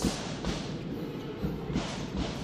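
Arena crowd noise during live basketball play, with a few thuds of the ball being dribbled on the hardwood court.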